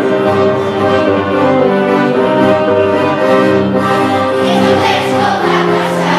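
A Christmas carol (kolęda) played on violin and saxophone, with a children's school choir starting to sing about four seconds in.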